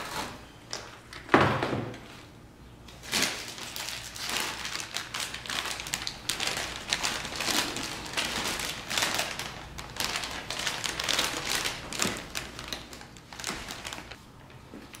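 Rummaging through a cardboard box packed with bubble wrap: irregular crinkling and rustling of plastic packaging with sharp clicks, and a single thump a little over a second in.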